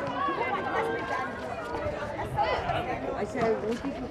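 Overlapping voices of players and courtside onlookers calling out and chattering during netball play, with scattered running footsteps on the court.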